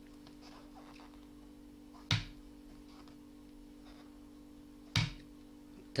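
Two sharp knocks, about two and five seconds in, over a steady low hum, as hands work a Tunisian crochet hook through yarn.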